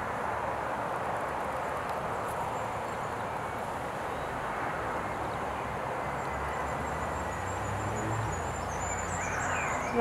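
Steady outdoor background noise, with a few faint high bird chirps near the end.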